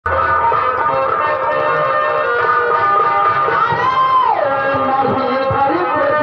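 Live nautanki stage music: several held tones sound together at a steady level, and one line slides down in pitch about four seconds in.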